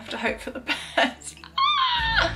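Background pop music with short vocal sounds, then near the end a high, drawn-out whining vocal cry that falls in pitch as it trails off.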